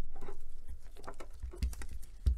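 A series of small clicks, taps and scrapes from a plastic pry pick being worked along the seam of a Xiaomi Redmi Note 10 Pro's mid-frame to separate it, with handling rustle from gloved hands. The clicks come thickest in the second half.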